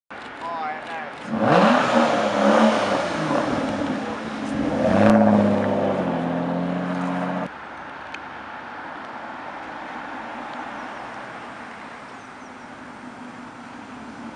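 Aston Martin Rapide's V12 revving and accelerating hard, its pitch climbing and falling through the revs, then holding a steady note before cutting off abruptly about seven and a half seconds in. After that comes only quieter, steady engine and road noise of the car driving by.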